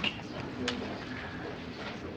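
Quiet room tone with a faint, low voice-like hum and one sharp click under a second in.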